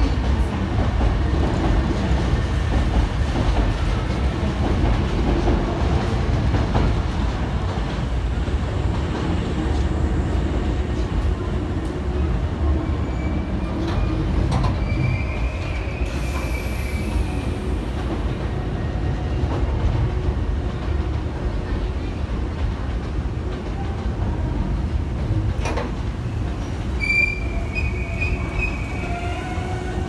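Hankyu 5100 series electric train (set 5104F) rolling into the platform: a steady low rumble of wheels on rail that eases slightly as it slows, with brief high squeals about halfway through and again near the end.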